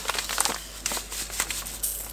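Thin plastic bag of breadcrumbs crinkling in the hands as it is tipped and shaken, with irregular crackles as the crumbs are poured onto baking paper.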